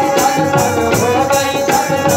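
Live Punjabi devotional music playing between sung lines: held melodic tones over a steady percussion beat with jingles, about three strokes a second.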